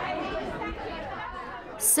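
Several pupils' voices chattering together, none standing out. A single voice begins to speak just before the end.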